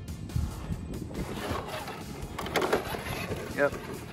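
1/10-scale HPI Venture Toyota FJ rock crawler, on its stock 35-turn brushed electric motor, driving down over rock. The motor and gears whine at crawling speed while the tyres scrabble on the stone, with a few knocks as it drops off the rock after about two and a half seconds.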